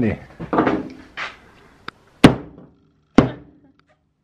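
Two sharp hammer blows about a second apart on a hard banana-flavoured horse treat lying on a wooden workbench, breaking the treat in half.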